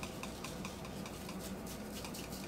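Plastic shaker of Cajun seasoning being shaken over a raw pork shoulder: a faint, even patter of light ticks, about five a second.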